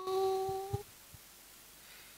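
A young girl singing a cappella into a handheld microphone, holding one steady note that stops a little under a second in, followed by a pause with faint room tone.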